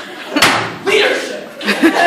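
A single sharp slam about half a second in, with a softer thump near the end, amid voices in a large room.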